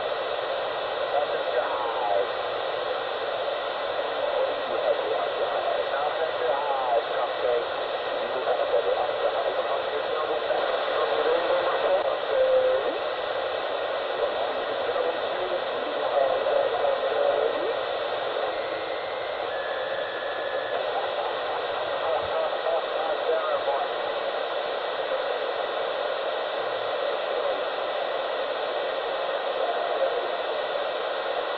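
Steady hiss under faint, unintelligible voices, sounding thin and tinny, as if heard through a small speaker.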